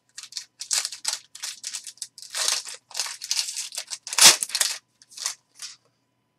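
Trading cards being handled and sorted by hand: a quick run of short, papery slides and flicks as card stock rubs together and cards are laid down on the table. The loudest comes just past four seconds in.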